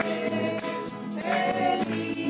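A small group singing together to a strummed nylon-string guitar, with a tambourine shaken in an even rhythm.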